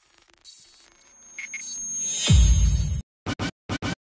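Electronic DJ intro stinger: scratch-like sounds and a rising build into a loud, deep bass hit a little over two seconds in. The sound then cuts out abruptly, and four short stuttered chops follow.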